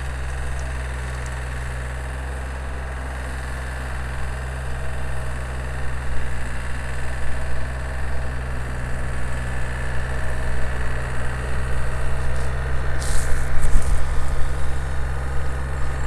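Farm tractor engine running as it drives a rear-mounted rototiller through garden soil, getting louder in the second half as the tractor comes closer, with a brief louder burst about thirteen seconds in.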